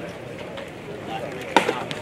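A pitched baseball smacking into the catcher's leather mitt with one sharp pop about one and a half seconds in, followed by a fainter click, over a murmur of background voices.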